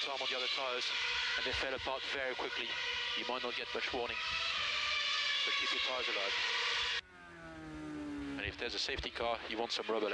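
Formula 1 team radio: a race engineer's voice over the radio link, above the onboard sound of a Red Bull RB9's 2.4-litre V8 running at high revs. About seven seconds in the radio cuts off suddenly and the engine note falls as the car slows, before speech comes back near the end.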